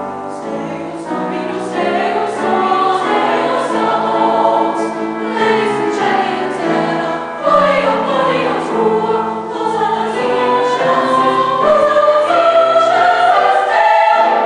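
Treble choir of girls' voices singing with piano accompaniment, in sustained chords that build in loudness, with a step up about halfway through and the fullest sound near the end.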